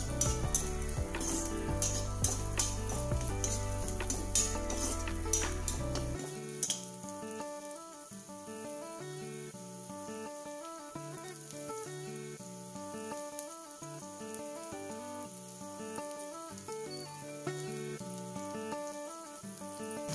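Chopped onions and green chillies sizzling in oil in a kadai, with a metal spatula scraping and stirring against the pan for about the first six seconds; after that the stirring stops and the quieter sizzle continues under background music with steady notes.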